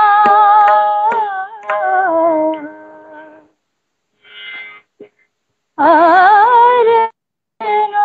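A woman singing a Hindustani classical vocal piece without words, holding long steady notes and breaking into wavering, ornamented runs that climb in pitch about six seconds in. The audio drops out completely three times, each for about half a second, as it does over a live video call.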